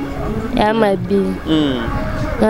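A girl speaking into a handheld microphone over a low background rumble, with a short steady high-pitched beep about one and a half seconds in.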